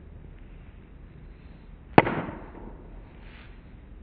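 A wooden croquet mallet striking a croquet ball once, about halfway through: a single sharp crack with a short ringing tail.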